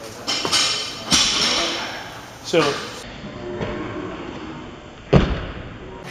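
Sneaker footfalls in the first second or so as an athlete steps down from a wooden plyometric box, then one sharp, deep thud near the end as his feet land on the box from a seated box jump.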